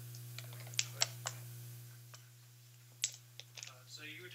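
A few sharp clicks and taps: two close together about a second in, a louder one near three seconds, then smaller ticks, over a steady low electrical hum.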